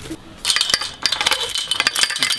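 Metal latch of a chain-link gate being worked open by hand, with a rapid run of metallic clinks and rattles from the latch and its chain starting about half a second in.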